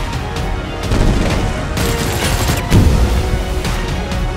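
Dramatic trailer music mixed with action sound effects: a crashing burst in the second half and then a deep boom about three quarters of the way in, the loudest moment.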